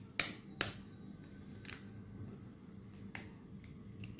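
Egg shell tapped against the rim of a stainless steel bowl to crack it: two sharp taps in the first second, then a couple of fainter clicks.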